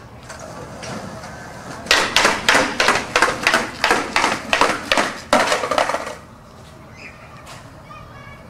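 Skateboard rolling down a flight of concrete stairs, its wheels clacking hard on each step edge: about ten sharp hits at two to three a second, starting about two seconds in and stopping about six seconds in.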